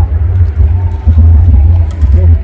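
Wind buffeting the microphone: a loud, uneven low rumble that swells and eases in gusts.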